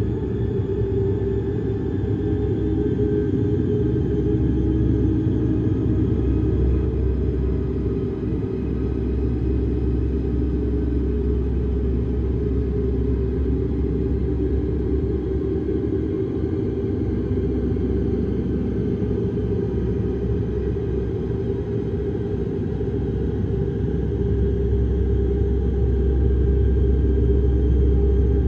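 A low, steady, rumbling drone of dark ambient background music, with nearly all its weight in the bass and faint held tones above it; it swells slightly near the end.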